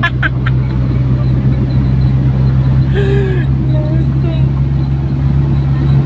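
Motorcycle engine of a tricycle running at a steady pace: a loud, even low drone that neither rises nor falls.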